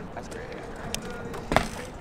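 A BMX bike being mounted and ridden off across a concrete roof, with one sharp knock about one and a half seconds in.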